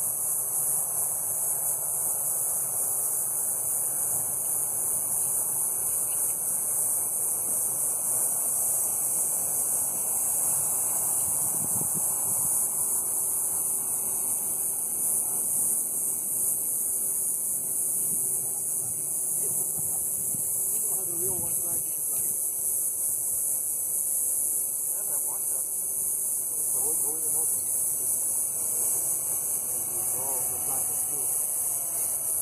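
An RC microlight's motor and propeller in flight, heard from a distance as a faint steady drone that fades out near the end. A loud, steady high-pitched hiss sits over it throughout.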